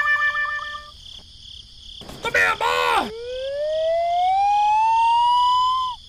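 Cartoon sound effects: a short squeaky voice-like cry about two seconds in, then a long rising whistle tone lasting about three seconds that cuts off suddenly. A steady cricket chirring runs underneath.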